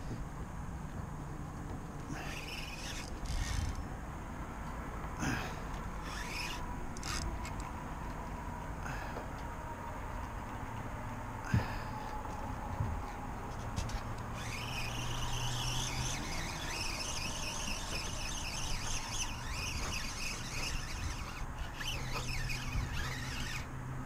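A steady low outboard-motor hum under the boat. From just past the middle onward, a fast, even whirr rises over it: line being wound in on a spinning reel.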